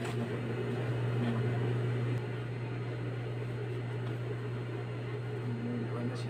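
Steady low electric hum of an industrial overlock sewing machine's motor running, a little louder for the first two seconds.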